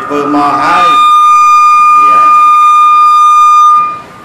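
Microphone feedback through a public-address system: a loud, steady high-pitched howl that swells up under the speaker's voice in the first second, holds for about three seconds, and cuts off suddenly just before the end.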